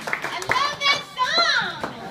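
Live music stops and voices cheer and whoop, with rising-and-falling high calls, over a few scattered claps.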